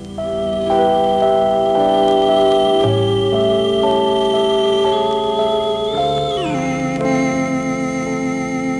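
Stylophone 350S electronic instrument playing held organ-like notes with a slight vibrato, the notes changing about once a second. About six seconds in, the whole sound slides down in pitch.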